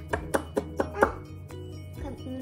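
About five quick, sharp taps or knocks of a hard object in the first second, over steady background music.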